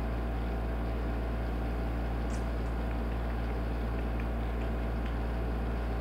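Steady low mechanical hum with a constant drone and no other events: room tone.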